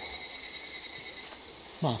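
Loud, steady chorus of insects in summer woodland: a continuous high-pitched shrill hiss. A man's voice comes in near the end.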